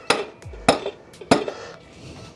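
Hammer tapping a headset bearing down onto an e-moto fork's steerer tube to seat it: three metallic taps about half a second apart.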